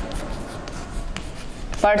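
Writing strokes scratching on a surface, with a few light taps, until a woman's voice resumes near the end.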